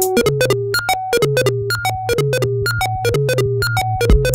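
Minimal techno: a repeating square-wave synth melody of short notes over a sustained synth bass line, with sharp clicks running through it.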